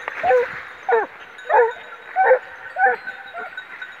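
Hunting hound baying on a wild boar's trail during the rapproché, working the scent line toward the boar. It gives a run of six loud bays, roughly one every half second, each dropping in pitch.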